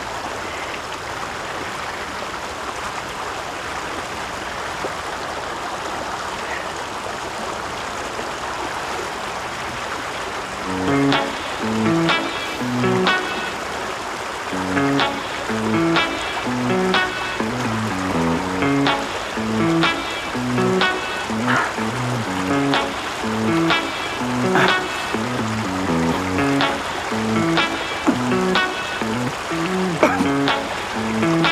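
Shallow mountain stream running steadily over rocks. About eleven seconds in, music with short, evenly paced notes and a beat comes in over it and carries on.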